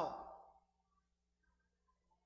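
A man's voice trailing off at the end of a word, falling in pitch and fading within about half a second, then near silence with a faint steady hum.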